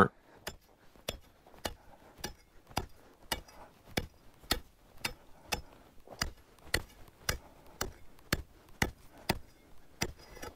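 Long-handled metal ice chipper striking the ice around frozen-in tires, about two sharp chops a second, chipping them loose.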